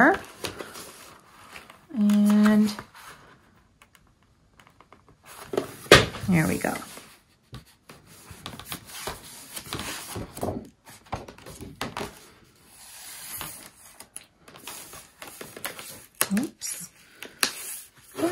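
Cardstock sheets handled by hand, with soft rustling and sliding as the paper is folded and pressed flat, and a sharp tap about six seconds in. A short hummed "mm" about two seconds in, and a few quiet murmurs.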